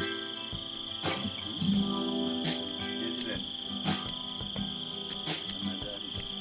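Background music with strummed acoustic guitar, a chord stroke about every second and a half, over a steady high-pitched insect drone, like crickets or cicadas.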